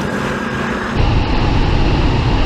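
Performance SUV engines running at full throttle in a drag race, a steady drone that changes about a second in to a louder, deeper rumble.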